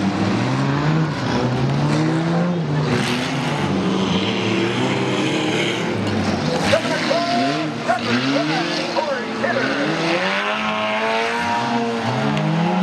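Several stock demolition-derby cars' engines revving up and down together as they drive and ram, with a sharp crash about seven seconds in.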